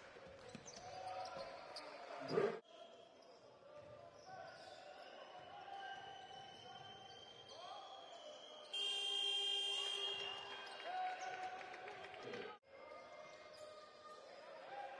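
Basketball game court sound: the ball bouncing and sneakers squeaking on the hardwood, with a thump about two and a half seconds in. A shot-clock buzzer sounds for about a second around nine seconds in, marking the shot clock running out.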